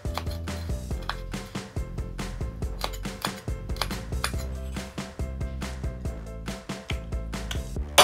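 Cleaver-style kitchen knife slicing small bird's eye chilies on a wooden cutting board: a quick, uneven run of knife taps against the wood, several a second, over background music.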